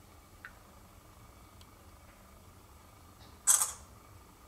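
Samsung smartphone camera app playing its shutter sound: one short, loud snap about three and a half seconds in, as a photo is taken. A faint tick comes about half a second in.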